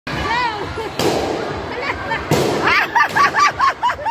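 Crowd of children shouting and cheering, with two sharp pops, one about a second in and another just past two seconds; a run of quick, excited shouts follows the second pop.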